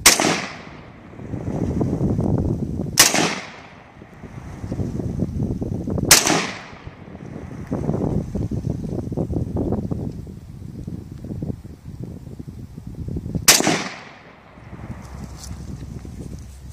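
Four rifle shots from a Yugoslav SKS semi-automatic 7.62×39 mm carbine, the first three about three seconds apart and the last after a longer pause of about seven seconds. Between the shots, wind rumbles on the microphone.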